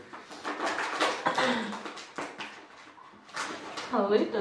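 Women laughing in irregular, breathy bursts of giggles.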